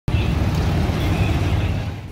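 Steady low rumble of road traffic and vehicle engines on a busy street.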